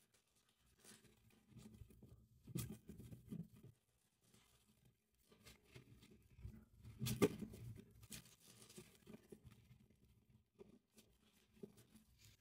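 A deck of tarot cards being shuffled by hand: faint, intermittent rustling and soft taps of the cards, loudest about three seconds in and again about seven seconds in.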